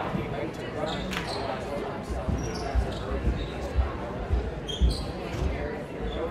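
A basketball being bounced on a hardwood gym floor, regular bounces about two a second starting about two seconds in, over the chatter of a gym crowd.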